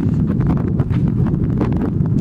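Wind buffeting the camera microphone: a loud, steady low rumble with irregular crackles.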